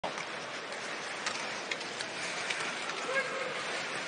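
Ice hockey arena ambience: a steady murmur of the crowd with a few sharp clicks from sticks, puck and skates in play on the ice.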